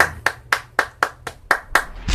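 One person clapping their hands, about four sharp claps a second.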